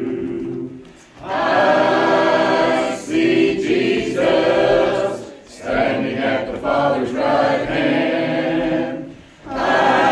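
Church congregation singing a hymn together, unaccompanied, in long held phrases with short breaks between them about a second in, just past the middle, and near the end.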